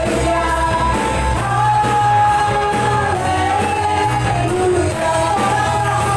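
Live worship band playing: several voices singing held notes together over electric guitar, bass, keyboard and a steady drum beat.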